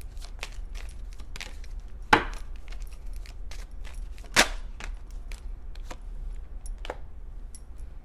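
A deck of tarot cards being shuffled by hand: a run of quick, light card flicks and taps, with two sharp, louder clicks about two and four and a half seconds in.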